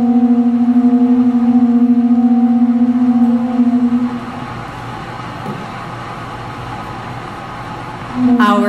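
Several pū (conch-shell trumpets) blown together in one long, steady low note that stops about four seconds in, leaving the murmur of the hall.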